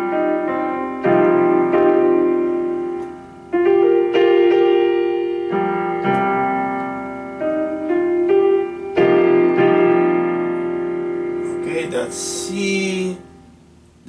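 Electronic keyboard on a piano sound playing a C minor seven suspended-four chord in several voicings. A new chord is struck every second or two and left to ring and fade.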